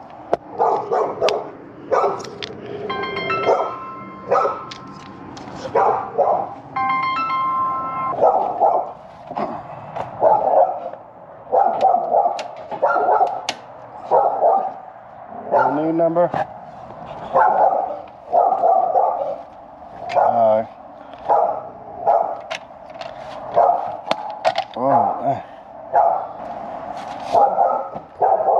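A dog barking repeatedly, one short bark every second or two. Twice near the start there is also a brief high-pitched tone.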